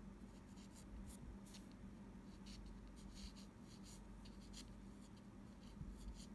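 A graphite pencil scratching faintly across paper in short, irregular strokes as an outline is sketched. A low steady hum sits beneath it.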